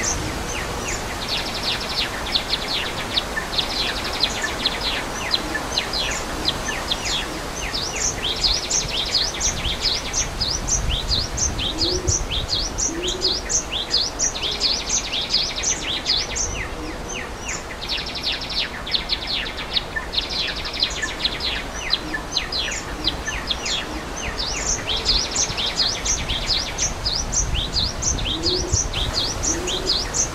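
A flock of small birds, gelatik (Java sparrows), chirping in quick overlapping calls, with buzzy trills that come and go every few seconds, over the steady rush of a waterfall. A few low cooing notes come in pairs about halfway through and again near the end.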